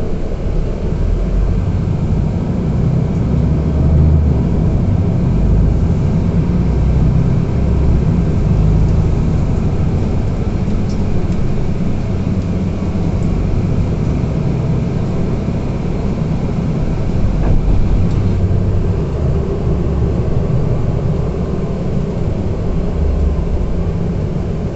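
Otokar Kent C city bus driving, heard from inside the passenger cabin: a steady low rumble of engine and road noise, with a couple of faint clicks.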